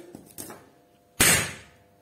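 A single sharp metallic knock about a second in, with a short ringing tail: a sawn-off half of a car alternator's stator, steel laminations wound with copper, being set down on a concrete floor.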